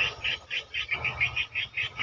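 A rapid, steady run of short high-pitched chirps, about six a second, from a calling animal.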